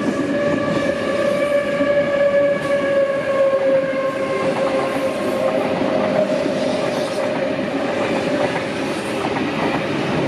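Double-deck electric trains running past at close range, with a continuous rumble of wheels on rail and a steady whine that falls slightly in pitch and fades by about halfway through.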